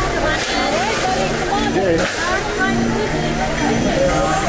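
Several people's voices talking over one another, indistinct chatter, over a steady low background of held tones.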